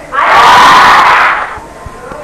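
A loud shout of voices, lasting just over a second, loud enough to distort the old recording.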